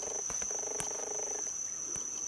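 Night insect chorus, a steady high-pitched buzz, with a lower pulsing call that breaks off just after the start and comes back for about a second.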